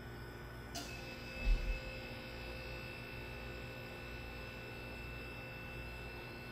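Steady low electrical hum of room tone. A sharp click comes just under a second in, and a brief low thump about half a second later. After the click a faint, steady high-pitched tone runs on.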